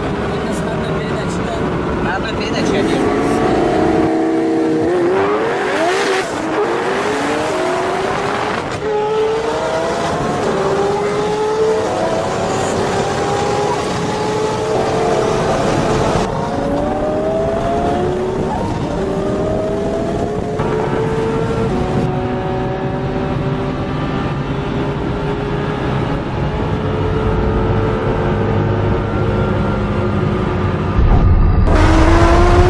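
A highly tuned sports car engine at full-throttle acceleration, heard from inside the cabin. Its pitch climbs slowly again and again as it pulls through the high gears, over steady wind and road noise.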